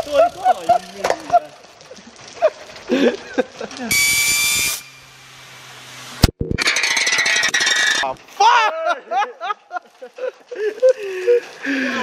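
A homemade steel fidget spinner built from a chain sprocket, spinning and grinding against concrete in two loud stretches, the first about four seconds in and the second about six seconds in, with a sharp knock between them. Voices shout before and after the grinding.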